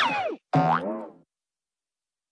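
Edited-in cartoon 'boing'-style sound effect: a falling pitch glide, then a second descending, wavering tone that fades out just over a second in.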